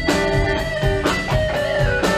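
Live rock band playing: a solid-body electric guitar takes the lead with held, bending notes over bass and a steady drum beat.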